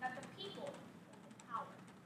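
A woman speaking in short phrases with pauses between them, as in a delivered speech, with faint light clicks in the background.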